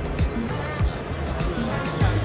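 Music with a steady beat, with voices in the background.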